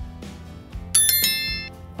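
A bright bell ding from a subscribe-button animation's sound effect: it rings out suddenly about a second in with several high tones together and fades away within about three-quarters of a second, over soft background music.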